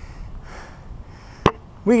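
A single sharp knock about one and a half seconds in, over a low outdoor background.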